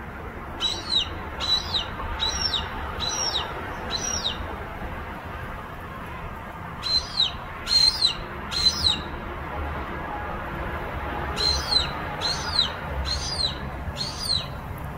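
A perched hawk calling: short high calls, each dropping in pitch, repeated in three bouts of four to six calls over steady background noise.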